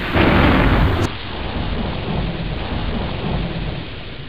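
A loud rushing noise with a deep rumble, starting abruptly. About a second in its top end cuts off and it carries on as a steadier, slightly fading rush.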